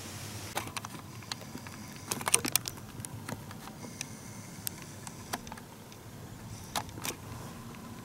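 Faint handling noise from a handheld camera being turned and zoomed: a cluster of clicks and rustles about two seconds in, then a few single clicks spread out.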